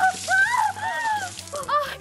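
A woman screaming in alarm over a hissing spray or splash that lasts about a second and a half, with background music underneath.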